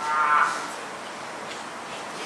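A person's drawn-out, held vocal sound, like a long 'ooh', lasting about half a second at the start, then only low room murmur.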